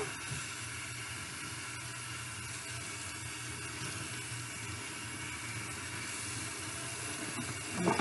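Cold tap water running steadily from a kitchen faucet into a stainless steel sink, splashing over crochet hair extensions as the shampoo is rinsed out.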